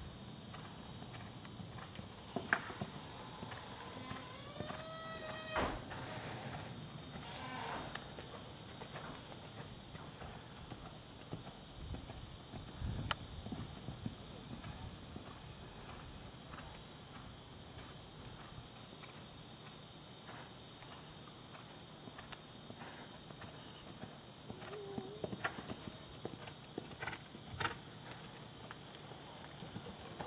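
Hoofbeats of a horse cantering on an arena's sand footing, scattered and dull, with a few louder knocks. About five seconds in, a short high call rises in pitch.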